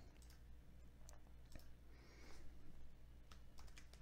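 Faint, scattered clicks of a computer mouse over near-silent room tone.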